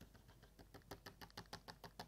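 A stylus tapping on a writing tablet in a quick, faint series of short clicks, about seven a second, as a dashed line is drawn stroke by stroke.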